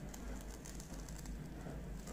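Masking tape being peeled slowly off leather, a quiet, light crackle.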